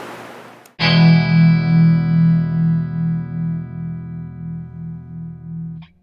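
A single sustained guitar chord with distortion starts suddenly about a second in and rings on, slowly fading with a slight wavering pulse. It cuts off abruptly just before the end.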